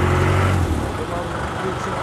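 A motor vehicle engine idling with a steady low hum that weakens under a second in.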